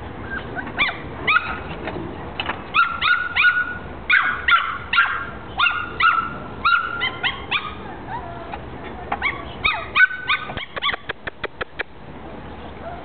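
A one-month-old Jack Russell terrier puppy yapping and yelping over and over in short, high-pitched cries that drop in pitch, sounding very upset. Near the end there is a quick run of about eight sharp clicks.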